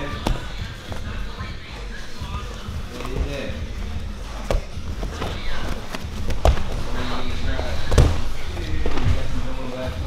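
Grapplers' bodies and bare feet thudding on foam mats during a live jiu-jitsu roll: several sharp thumps, the loudest about eight seconds in, amid gi fabric rustling and shuffling.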